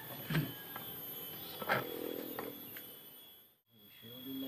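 Footsteps and rustling as a person walks on a tiled floor carrying a rolled mat, a few soft knocks over a steady faint high tone. The sound drops out briefly near the end.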